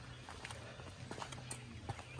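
Faint footsteps of a person walking, a few soft irregular taps over a low steady hum.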